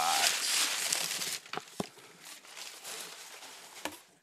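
Brown kraft packing paper crumpling loudly as it is pulled out of a cardboard box, for about a second and a half, then quieter rustling with two light taps.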